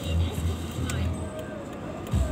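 Low engine and road rumble inside a moving car's cabin, with faint voices and music mixed over it.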